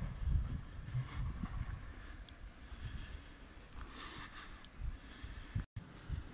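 Wind buffeting the microphone in low, gusty rumbles, strongest in the first second or so, over faint outdoor ambience. The sound drops out abruptly for a moment just before the end.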